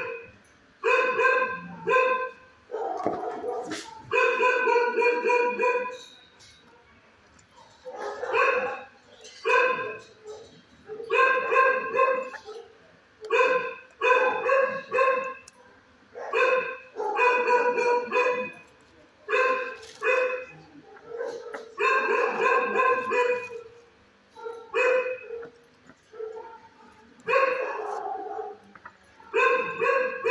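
A dog barking in a shelter kennel, in runs of repeated barks, some drawn out to a second or two, broken by a few short lulls.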